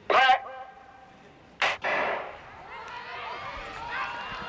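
Sprint start: a short shouted starter's command, then a starting gun cracks about a second and a half in, sending the sprinters off. The spectators then break into cheering and shouting that builds as the race runs.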